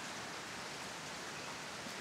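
Steady rain falling, a soft even hiss.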